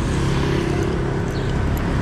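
A motor vehicle's engine running at a steady pitch over a low street rumble.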